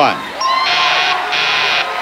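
Game-show overbid buzzer sounding in three harsh blasts about half a second each, the last one starting near the end. It signals that every contestant's bid is over the actual retail price.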